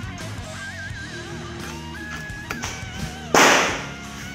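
A single shot from a PCP bullpup air rifle of the FX Royale type about three seconds in: one sharp crack with a short fading tail, over background music.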